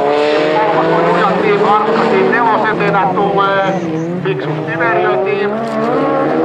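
Several folkrace cars' engines revving hard together, each rising in pitch through a gear and dropping back as it shifts.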